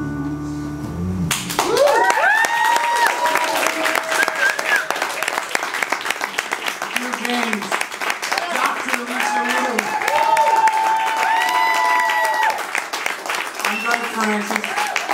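An acoustic guitar song ends about a second in. It is followed by audience applause with whoops and cheers.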